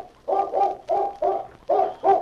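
A hound barking excitedly in a quick run of short barks, about three a second.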